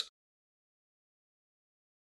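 Silence: a gap in the soundtrack with no audible sound.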